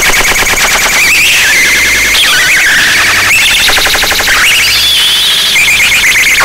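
Loud, harsh electronic sound-art texture: a rapid pulsing buzz, alarm-like, over a low drone. Its brightest pitch band steps down and up every second or so, rising near the end.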